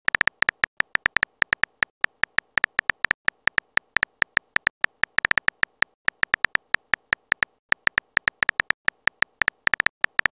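Keyboard typing sound effect from a texting-story chat animation: a fast, uneven run of short, bright electronic clicks, one per letter as a message is typed out, about six or seven a second with a brief pause just before the end.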